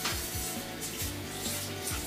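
Background music with steady low notes, over the rubbing of a sponge scrubbing a dish at the kitchen sink.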